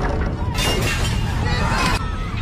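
Film action sound effects of a suspension bridge being torn apart: shattering and crashing, with sudden bursts about half a second in and near the end, over music.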